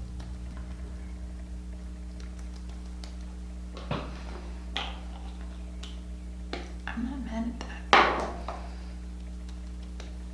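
A few sharp clicks and clinks of hard makeup packaging being handled, caps and containers knocking, the loudest near the end, over a steady low hum.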